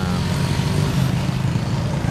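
Steady low rumble of car and motorbike engines in slow traffic crossing a pontoon bridge.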